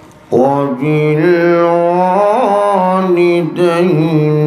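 A man chanting unaccompanied through a microphone, in long held melodic notes. It starts about a third of a second in and breaks briefly about three and a half seconds in.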